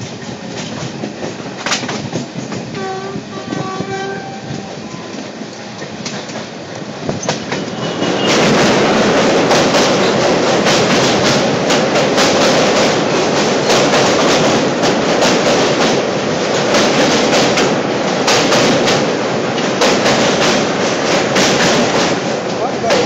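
Electric passenger train running at speed, heard from an open coach door: a steady rumble with wheel clatter, and a short train horn about three seconds in. From about eight seconds a much louder rush and clatter sets in as a passing express's coaches run close by on the next track.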